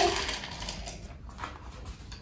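Domestic cat purring, a low steady rumble, while it eats dry kibble from a bowl.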